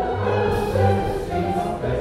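Choir singing, with notes held and changing about every half second.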